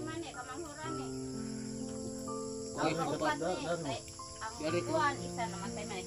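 Crickets shrilling steadily, with soft background music of long held notes and brief bits of distant talk about halfway through and again near the end.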